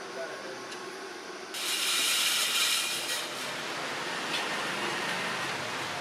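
Workshop machine noise: a steady hiss that starts abruptly about a second and a half in, after a quieter stretch of faint handling sounds.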